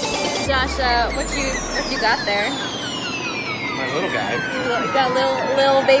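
People talking, with a long high tone gliding steadily down in pitch through the whole stretch and a few fainter falling tones alongside it. A deep hum sounds for the first couple of seconds.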